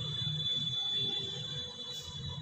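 Whiteboard marker squeaking in a steady high tone as it is drawn along a ruler across the board, fading near the end, over a low background hum.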